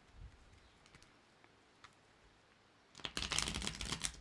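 A tarot deck being shuffled by hand. It is nearly quiet for about three seconds, with a few faint taps, then a dense run of quick card clicks starts near the end.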